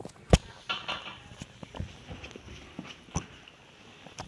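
Handling noise from a phone or camera being moved and put down: a sharp thump about a third of a second in, then scattered knocks and rustles, with another knock near the end.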